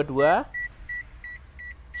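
Daihatsu Sigra's in-cabin warning chime beeping repeatedly at one high pitch, about four short beeps a second.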